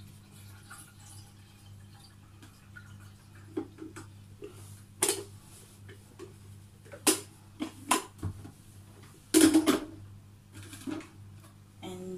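Scattered clinks and knocks of kitchen items being handled, about eight short sharp sounds with a louder brief clatter about two-thirds through, over a steady low hum.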